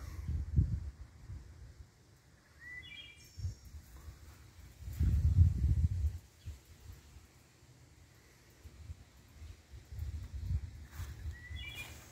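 Outdoor garden ambience: a low, uneven rumble on the microphone, loudest about five seconds in. A small bird chirps briefly twice, about three seconds in and again near the end.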